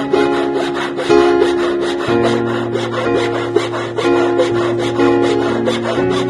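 Steel hand file rasping back and forth across the edge of a fine silver bar in quick, even strokes, over background music.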